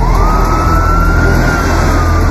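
Emergency vehicle siren wailing: one slow rise in pitch that peaks and begins to fall again, over a deep low rumble.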